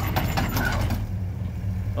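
A 1972 Ford LTD's V8 engine running at low speed as the car creeps up the trailer ramps, a steady low hum. Light clicks and rattles come in the first second.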